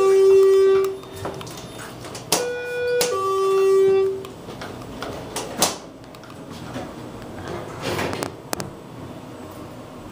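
Schindler traction elevator's electronic two-tone chime: a higher note, then a lower note held a little longer, sounding twice. A few brief knocks follow later.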